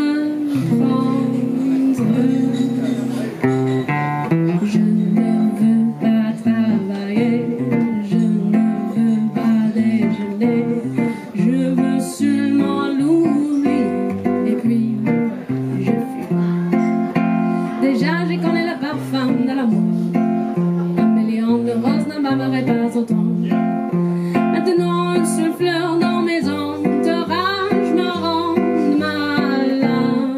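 Acoustic guitar played live in an instrumental passage, with notes and chords changing continuously.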